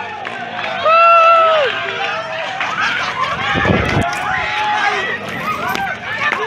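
A crowd of spectators shouting and cheering, many voices overlapping, with one long loud shout about a second in. A brief low rumble on the microphone comes about midway.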